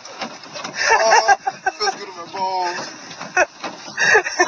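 Speech: voices talking, with one drawn-out vocal sound a little past halfway.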